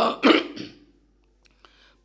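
A man's voice, brief and trailing off within the first second, then a pause of near silence broken by two faint clicks.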